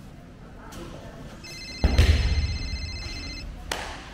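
An electronic phone ringtone trills for about two seconds. The loudest sound is a heavy thump about two seconds in, and a lighter knock comes near the end.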